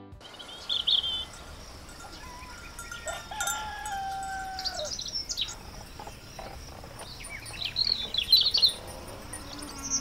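Birdsong alarm tone playing from an Amazon Echo smart speaker: scattered bird chirps and a couple of held whistles over a soft steady background.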